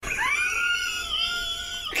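A high-pitched voice holding one long shriek for almost two seconds, rising a little at the start, then breaking into breathy laughter.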